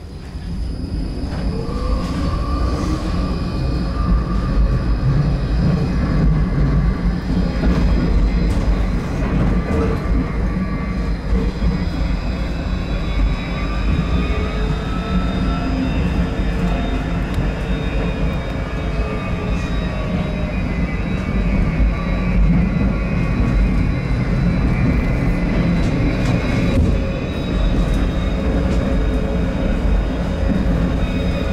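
Heard from inside a tram: its electric traction motors start up with a whine that rises in pitch as it gathers speed about a second in. After that comes a steady rumble of the wheels on the rails with the motor whine running over it.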